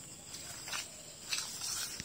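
Quiet outdoor background with a faint steady high insect-like hiss and two faint light clicks, about two-thirds of a second and a second and a third in.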